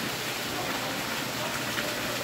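Steady splashing hiss of a small indoor waterfall, water falling down a stone wall.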